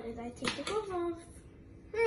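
A child's voice making short utterances in the first second or so, then again at the very end.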